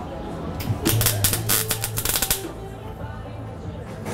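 Stick (MMA) arc welding on a steel barrel: the arc crackles and sputters for about two seconds, over a low buzz that carries on a little longer before dying away. The welder is a beginner striking short runs.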